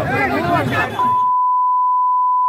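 A crowd of men talking and shouting over each other, then, about a second in, the sound is cut off and replaced by a steady high-pitched censor bleep that holds one tone.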